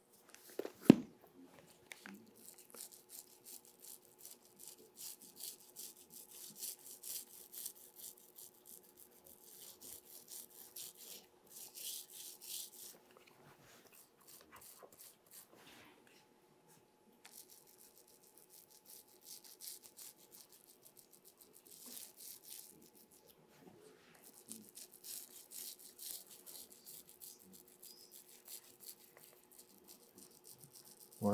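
A bristle brush scrubbing paste across a sheet in bouts of quick scratchy strokes, with one sharp knock about a second in. A faint steady hum lies underneath.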